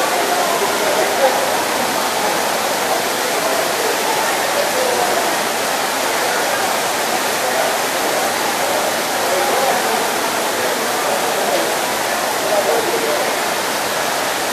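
Heavy tropical downpour: a dense, steady hiss of rain falling on wet ground, standing floodwater and buildings.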